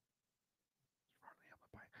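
Near silence, then from a little past a second in, a man faintly whispering words under his breath.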